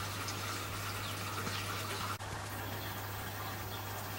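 Faint outdoor background: a steady hiss with a low hum and a few faint chirps, briefly dropping out about two seconds in at an edit.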